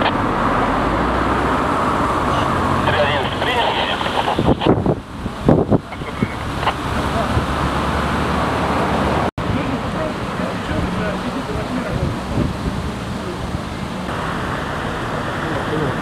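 Outdoor street ambience: steady traffic noise with indistinct voices in the background. A few sharp bumps on the microphone come around five to six seconds in, and the sound cuts out for an instant about nine seconds in.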